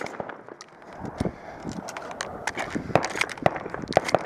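Handling of a pump-action shotgun between shots: a quick, uneven run of light metallic clicks and knocks as shells are loaded, mixed with footsteps scuffing on gravel.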